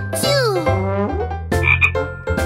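Croaking of a cartoon frog character: a pitched call that slides down in pitch over about half a second, then a shorter croak near the end.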